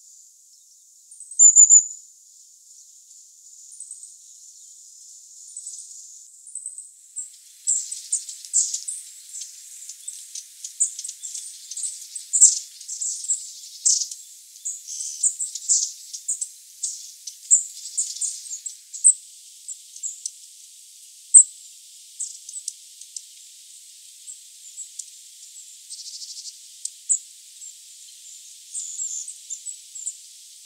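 Long-tailed tits calling: thin, very high 'tsi-tsi-tsi' notes and rolling 'tsurr' calls. The calls are sparse at first, with one loud call near the start. From about seven seconds in they come thick and fast, in a busy run of many short calls.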